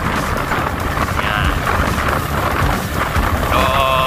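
Wind rushing over the microphone of a camera moving with a pack of road bikes: a steady, loud rumbling hiss.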